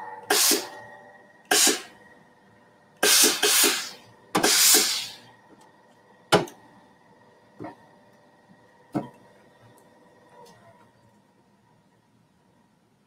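Steam iron hissing out four short bursts of steam onto fabric during pressing. Three sharp knocks follow, from a wooden tailor's clapper being set down on the pressed seam.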